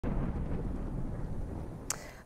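Low rumbling sound effect of a news title sting, fading over the two seconds, then a brief sharp swish near the end.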